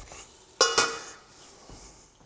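A sharp metallic clang of a utensil against a stainless steel cooking pot, ringing briefly, with a second knock right after it.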